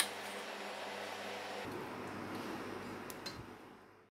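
Steady low background hum with faint steady tones, like a fan running in a small room. There is a sharp click right at the start and a few faint clicks about three seconds in, then the hum fades out near the end.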